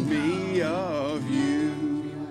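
Strummed acoustic guitar with a man singing along, holding a long wavering note.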